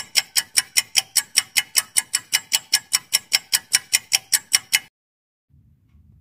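A countdown-timer clock-tick sound effect: sharp, evenly spaced ticks, about five a second, running for nearly five seconds and then stopping. It marks the five-second answer time.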